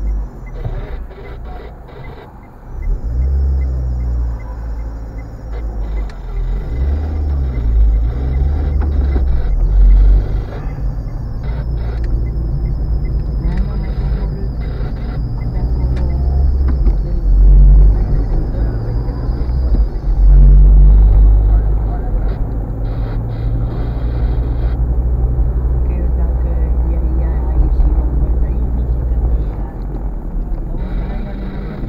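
Car engine and road noise heard from inside a moving car's cabin, a low rumbling drone whose pitch shifts and whose loudness swells and eases several times as the car drives through traffic.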